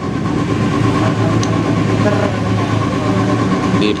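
Steady low mechanical drone with a faint constant tone above it, and one small click about a second and a half in.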